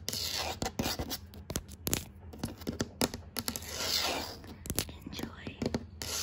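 Long acrylic fingernails tapping fast and irregularly on a ridged hard surface: a dense run of sharp clicks. Hissing, scratchy rushes come at the start, about four seconds in, and at the end.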